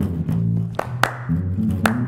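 Electric bass guitar playing a short solo line of low plucked notes, with three sharp hand claps over it.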